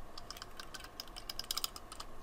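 Adhesive tape runner drawn along a narrow paper strip, its mechanism giving a quick, irregular run of small clicks that come thickest a little past the middle.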